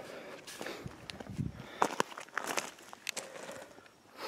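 Footsteps on loose gravel: a handful of uneven steps, heard as short, irregularly spaced scrunches.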